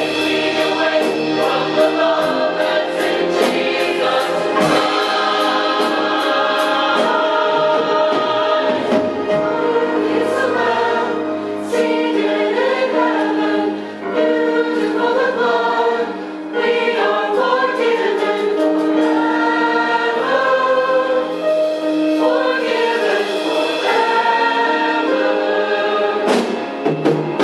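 A mixed church choir of men and women singing together in held, sustained phrases, with a steady sustained note underneath and short breaths between phrases.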